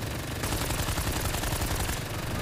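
A battle sound effect from an anime fight: a continuous rapid rattle of many quick impacts, like sustained automatic gunfire, at an even level throughout.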